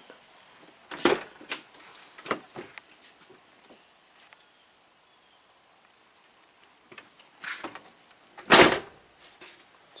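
1989 Chevrolet Caprice car door: a few light latch and handle clicks, then one loud thud near the end as the door is pushed shut. The fresh weather-stripping molding keeps the door from shutting fully.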